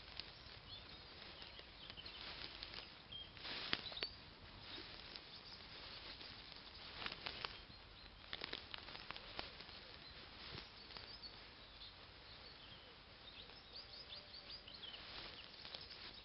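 Faint rustling and scattered light crackles of movement through long, rough grass, with clusters of sharper clicks about four seconds in and again around seven to nine seconds.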